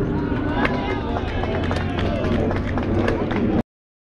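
Spectators' and players' voices calling out and chattering across a baseball field, indistinct, over a steady low rumble, with scattered sharp clicks. The sound cuts off suddenly a little before the end.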